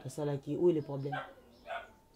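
Speech only: a voice talking for about a second, a short pause, then a brief utterance near the end.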